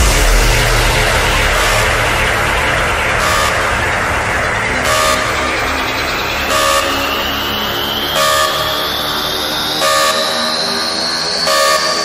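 Dubstep build-up: sustained, horn-like synth chords under a tone that rises slowly in pitch, with a short hit about every second and a half. It leads into the drop.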